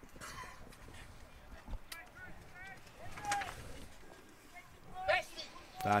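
Faint, scattered voices calling out across an open football ground, a few short shouts over a low background hum of the outdoors. A man's voice starts speaking right at the end.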